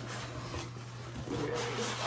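Cardboard scraping and rubbing as a product box is slid out of a snug corrugated shipping carton, the scraping growing louder in the second half.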